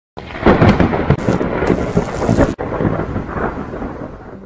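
Thunderstorm: rain with rumbling thunder, with a sudden break about two and a half seconds in, then fading away.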